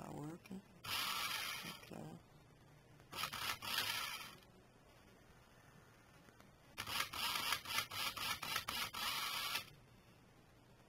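Small electric drive motor and plastic gearbox of a toy RC car whirring in stop-start runs: three bursts, the last about three seconds long and stuttering in quick pulses. This is the board's jerky forward drive signal, which makes the motor spin and stop.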